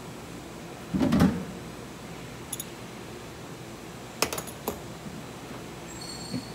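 Hand tools on plumbing: a dull knock about a second in, then a few sharp metallic clicks a little after four seconds, as a wrench and a threaded water-supply fitting are worked by hand.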